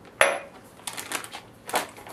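A marinade jar set down on a stone countertop with one sharp knock, followed by light crinkling and clicking of a plastic zip-top bag being handled as it is sealed.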